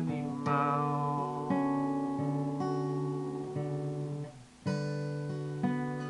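Acoustic guitar strummed in chords, each left to ring before the next. About four seconds in it briefly dies away, then the strumming picks up again.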